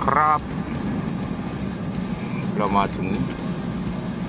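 Steady road and engine noise inside a moving car, with background music under it.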